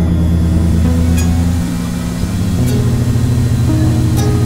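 Experimental electronic synthesizer drone music: layered sustained low tones that shift to new pitches in steps, about a second and a half in and again near three seconds, over a hissy haze with a few faint clicks.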